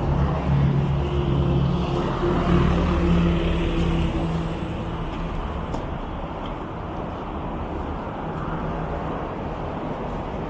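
Street traffic on a snowy road: the engine of a heavy truck is loudest in the first half as it passes, then fades into steady tyre and road noise. Faint crunching footsteps in snow come about two a second.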